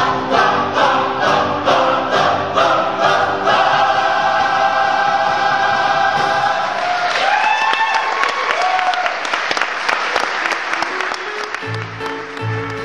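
Mixed chorus and band finishing a show tune: sung chords over a regular beat, then one long held final chord that ends about two thirds of the way through. Audience applause follows.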